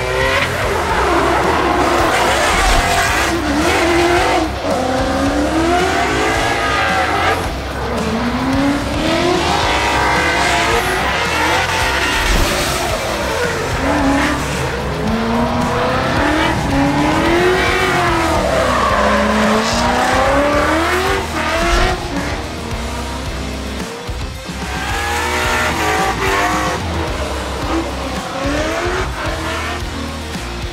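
Ford Mustang RTR drift car's engine revving, its revs rising and falling over and over as it drifts, with tyre squeal.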